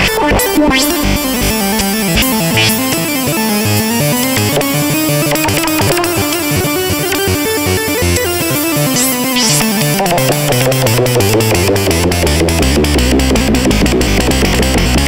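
Improvised music on a Novation Peak synthesizer: sustained tones whose pitch slides up and down. A deep bass comes in about two-thirds of the way through, and fast clicking percussion joins near the end.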